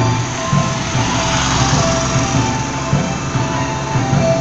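Mechanical clock's melody playing from its loudspeaker during its hourly show, with a rushing background noise swelling through the middle.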